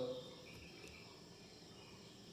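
Crickets chirping faintly in the background, a thin steady high-pitched trill, just after the last syllable of a spoken word dies away.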